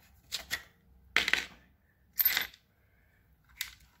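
Short bursts of handling noise from a torn-down small engine's parts being moved on the bench: a quick pair of scrapes or clicks, then two stronger ones about a second apart, and a faint one near the end.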